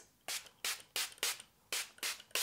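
Pump-spray bottle of e.l.f. Active post-workout cool-down facial mist spritzed onto the face: about five short hissing sprays in quick succession, roughly two or three a second.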